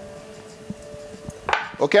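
A few faint, light knocks of glass tumblers being handled on a wooden cutting board.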